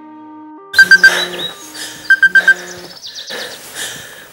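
An electronic alarm goes off suddenly about a second in: quick high beeps in a group of three, then a group of four, inside a loud jangling electronic tone, with a run of quick rising notes near the end.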